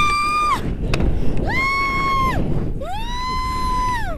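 A woman's excited high-pitched "woo" screams: three long held cries, each rising at the start and falling away at the end, over the low rumble of wind on the microphone.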